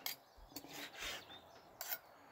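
Chef's knife slicing raw pike fillet thin against a plastic cutting board: faint scraping strokes, with a sharper stroke near the end.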